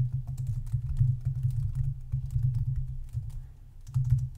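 Typing on a computer keyboard: a fast, irregular run of keystrokes, over a low steady hum.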